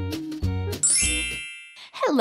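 A short stretch of plucked, bouncy children's music ends on a last low note, and a bright ringing chime sounds just under a second in and fades away over about a second.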